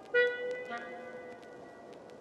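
Sparse computer-generated tones from an algorithmic avant-garde composition. A sudden, struck-sounding note comes in about a fifth of a second in, its several pitches ringing and fading, and a softer second note follows a little later, over a faint hiss.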